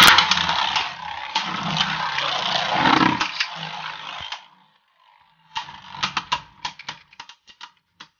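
Beyblade Burst spinning tops whirring and scraping on the plastic floor of a Zero-G stadium and clashing, loud for about four seconds after the launch, then cutting off. About a second and a half later comes a run of sharp clicks, coming faster and faster, as two spinning tops knock against each other.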